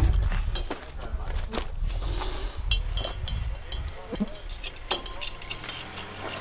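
Barbed wire being pulled by hand through the steel rollers of a barbed wire dispenser: scattered clicks, scrapes and light metallic clinks of wire on metal, over a low rumble.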